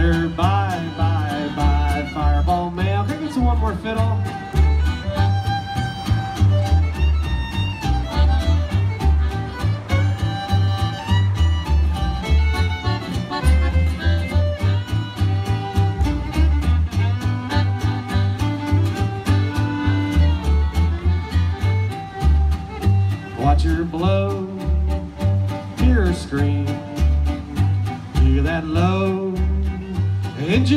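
Live bluegrass band playing an instrumental passage on fiddle, acoustic guitar, accordion and upright bass, the bass keeping a steady beat.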